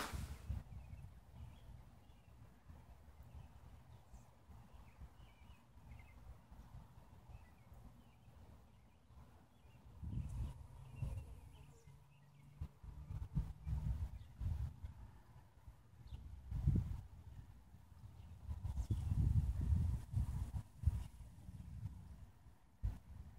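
Wind buffeting the microphone outdoors: low, irregular rumbling that is faint at first and then swells in gusts from about halfway through to near the end.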